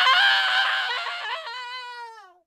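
Rooster crowing once, a 'good morning' sound effect: a loud crow that starts abruptly, then thins to one held note that falls in pitch and fades away near the end.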